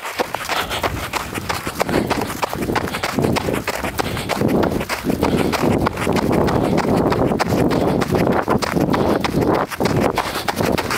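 Running footsteps on snow, a quick steady rhythm of footfalls picked up by a body-worn camera.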